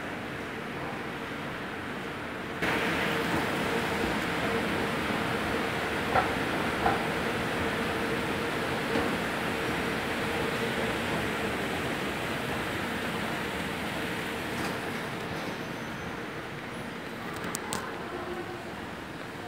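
Steady mechanical drone of indoor machinery with a faint steady hum, growing louder a few seconds in; two light clicks come around the middle.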